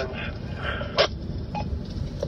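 Low, steady road rumble inside a moving car, with a single sharp click about a second in.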